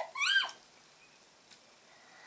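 Two short, high-pitched vocal squeaks from a person tasting food, each rising then falling in pitch, in the first half second; the rest is quiet room.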